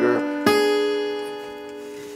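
Guitar arpeggio ending on the high E string: a single note plucked about half a second in rings on with the earlier notes and slowly fades. The tail of a spoken word is heard at the very start.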